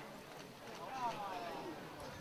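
Indistinct voices in the background, with one voice briefly louder about a second in, its pitch falling.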